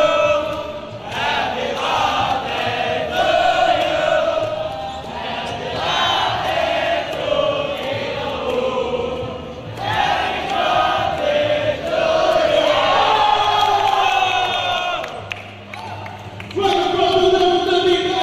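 A group of young men chanting and singing together loudly, some notes drawn out for several seconds, with occasional thumps.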